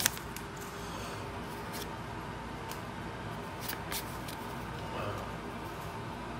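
Soft handling of trading cards drawn from an opened foil booster pack, with a few faint clicks of card on card over steady background noise.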